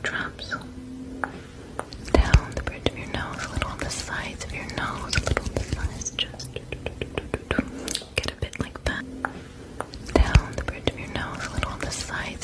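A person whispering, with many light clicks and taps of fingers and paper being handled, and two louder thumps about two seconds in and near the end.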